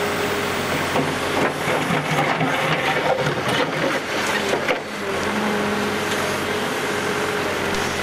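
Hidromek backhoe loader's diesel engine running steadily under load as its bucket digs a trench, with a steady tone over the engine and irregular knocks and scrapes of the bucket in soil and stones, mostly in the first half.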